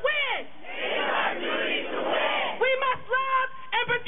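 Call-and-response chant at a protest rally. A crowd shouts a line back together for the first couple of seconds. Then the leader's voice comes over the microphone and PA, calling the next line in short shouted phrases.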